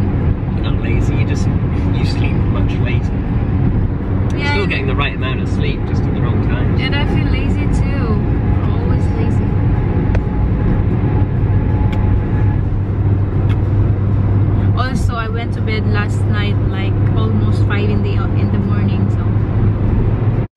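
Car interior noise while driving at speed: a steady low drone of engine and tyres on the road. Voices talk intermittently over it.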